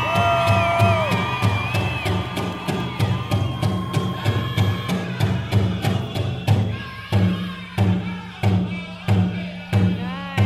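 Powwow drum group playing a women's fancy shawl competition song: a steady beat on a big drum under high, wavering group singing. About six seconds in, the beats become strongly accented, about two-thirds of a second apart.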